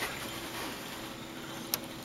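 Quiet pause with a faint steady background hiss and one light click near the end.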